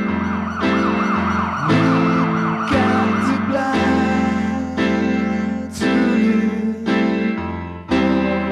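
Instrumental passage of a home-recorded new-wave pop ballad: electric bass, programmed drums and sustained chords. In the first three seconds a high lead line warbles rapidly up and down in pitch.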